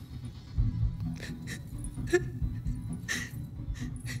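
A woman crying, with a few short sniffs and sobs, over a soft, low music score.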